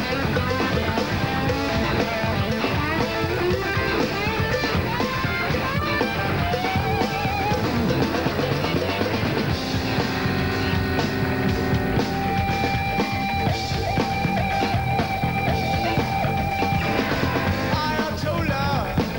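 Rock band playing live with electric guitar, bass and drum kit: an instrumental stretch with no singing. Bending, wavering guitar lines give way about halfway through to long held notes over the steady beat.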